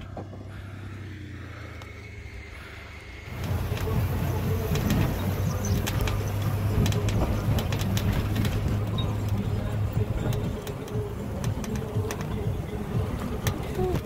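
A steady low hum for about three seconds, then a sudden change to louder wind rushing over a moving microphone, with scattered clicks and rattles from riding over rough grassland.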